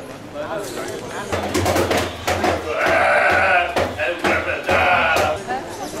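A person's loud, high-pitched, wavering voice, not plain talk, running from about a second in to about five seconds in.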